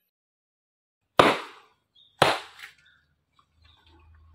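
A wet cloth slapped hard against a stone washing slab twice, about a second apart, in hand-washing of clothes by beating.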